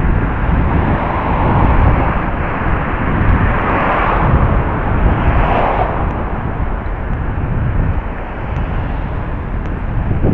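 Outdoor street noise and wind rumble picked up by the small built-in microphone of a pair of spy-camera glasses as the wearer walks. The noise is steady and heavy in the low end, with a swell about four to six seconds in.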